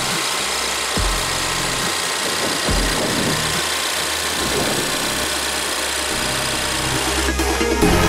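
Electronic background music over a Ford EcoBoost engine idling steadily under the open hood.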